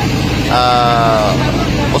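A man's drawn-out hesitant "uh" lasting about a second, over a steady low drone like a running vehicle engine.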